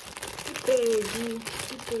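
Thin clear plastic bag crinkling as it is handled, with a woman's voice over it from about half a second to a second and a half in.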